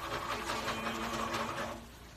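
Rapid, even tapping of a cooking utensil against cookware at the stove, with a steady low hum through the middle of it. The tapping dies away just before the end.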